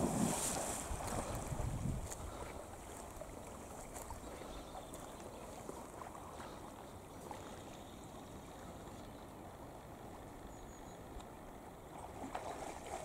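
A German shorthaired pointer jumps into a river with a splash and sloshes through the water for about two seconds. After that there is only faint lapping water and wind on the microphone while the dog swims.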